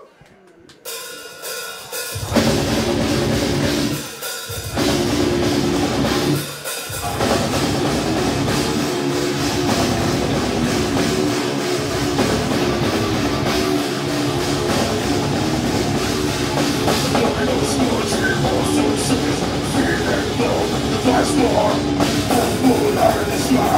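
Three-piece death metal band of drum kit, distorted electric guitar and bass guitar starting a song live. After a near-quiet first second the full band comes in about two seconds in, stops briefly twice, then plays on with dense drumming and cymbals.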